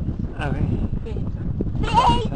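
A woman's voice, with short voiced sounds and a wavering, bleat-like vocal sound near the end that is most likely a laugh, over a steady low rumble.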